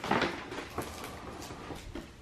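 Paper rustling and crinkling as a paper gift bag and its wrapping paper are handled and pulled open, loudest just at the start, with a few small crackles after.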